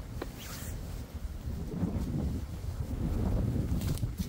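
Wind buffeting the microphone, a low rumble that grows louder, with a few brief knocks and rustles near the start as someone climbs over a wooden stile.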